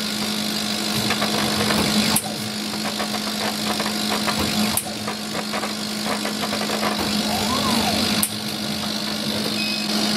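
CO2 laser cutter cutting lines in fibreboard at high power and slow speed: a steady machine hum with a fine crackle, changing abruptly three times, a couple of seconds apart.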